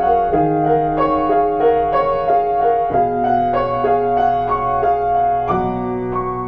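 Piano playing an evenly repeating figure of notes, about three a second, over held bass notes that change every couple of seconds.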